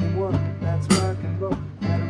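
Digital keyboard playing an instrumental rock and roll passage over a steady low bass line, with a sharp hit on the beat about once a second.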